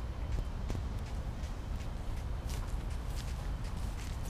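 Footsteps of someone walking a path strewn with dry bamboo leaves: a few short, uneven steps over a steady low rumble.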